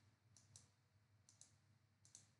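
Near silence broken by faint computer mouse clicks: two quick pairs about a second apart.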